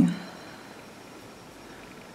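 Quiet room tone: a low, steady hiss, with the tail of a spoken word at the very start.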